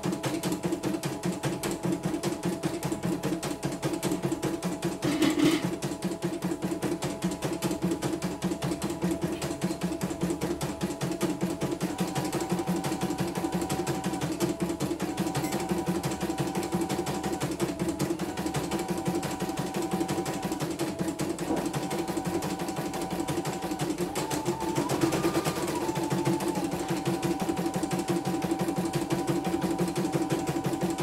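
Computerized home embroidery machine stitching a design: a fast, even rattle of the needle running steadily, over a motor whine that steps up and down in pitch as the hoop moves. The rattle swells briefly about five seconds in and again near twenty-five seconds.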